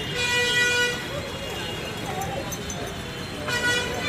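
Vehicle horn honking in street traffic: one long honk of about a second at the start, and a shorter honk near the end.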